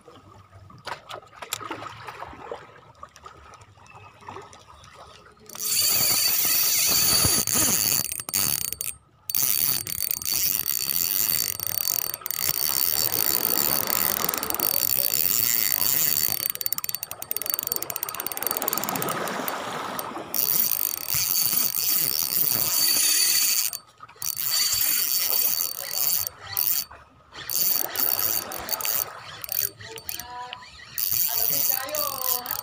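A fishing reel's drag clicking rapidly as line is pulled off, the sign of a hooked fish running. It starts about five seconds in and goes on in long runs broken by brief pauses.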